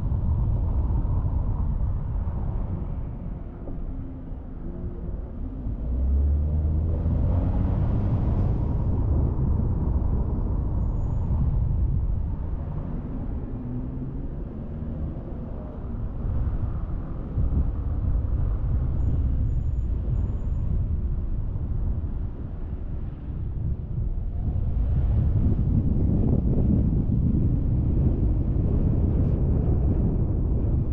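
Road traffic noise with a steady low rumble. A passing vehicle's engine is heard from about six seconds in, its pitch shifting over several seconds.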